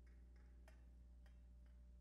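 Near silence: a steady electrical hum with a few faint clicks.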